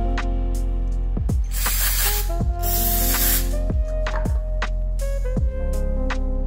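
Aerosol can of mass air flow sensor cleaner sprayed in two bursts of under a second each, about a second and a half in and again just after, over background music.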